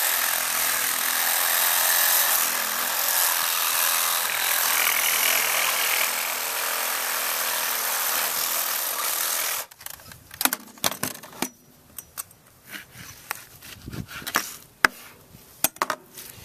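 Electric reciprocating saw cutting through lamb rib bones along the backbone. It runs steadily for about ten seconds and then stops suddenly, followed by scattered knocks and clicks.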